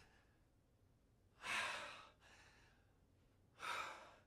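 A man breathing out heavily twice in pain, about a second and a half in and again near the end, as he nurses a hurt arm.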